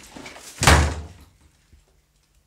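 A door slamming shut once, a single heavy bang well under a second in that dies away quickly.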